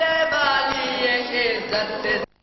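A noha, a Shia mourning lament, chanted by young male reciters in long held notes with slow bends of pitch.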